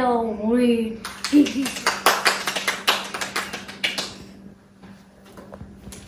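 A short, voice-like sound sliding down in pitch, then hand clapping for about three seconds, which stops about four seconds in.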